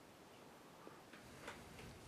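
Near silence: room tone with a few faint ticks in the second half.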